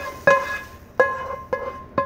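A nonstick frying pan knocked repeatedly, about two knocks a second, as sausage mixture is scraped and tapped out of it. Each knock leaves the pan ringing with a clear metallic tone that fades quickly.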